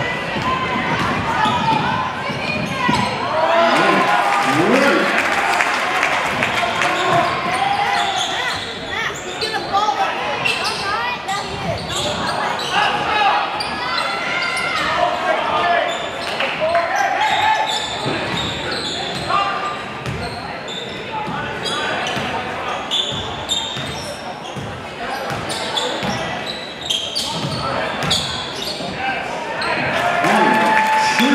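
A basketball dribbled and bouncing on a hardwood gym floor in repeated sharp knocks, under a steady babble of players' and spectators' voices, all echoing in a large gymnasium.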